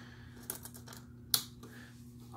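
Small orange plastic toy missiles being plugged into the white plastic missile launcher of a Matchbox Top Gun aircraft carrier toy: a few light plastic clicks, then one sharp snap about a second and a half in as a missile seats.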